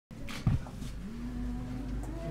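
A low, held human voice sound lasting about a second, among the murmur of people in a small room. It comes after a single knock about half a second in.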